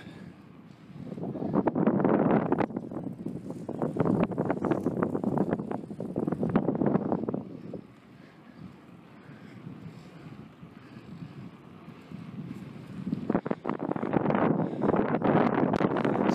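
Wind buffeting the microphone in gusts: one long gust from about a second in to past the middle, a lull, then another rising near the end.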